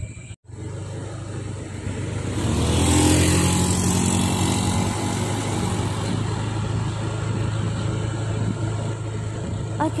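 Small motor scooter engine pulling away, getting louder for about a second, then running steadily while riding, with wind hiss on the microphone.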